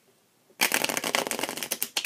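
A deck of Bicycle Majestic playing cards being riffle-shuffled on a table: about half a second in, a rapid run of ticking card edges falling together for just over a second, ending in a short snap as the halves close.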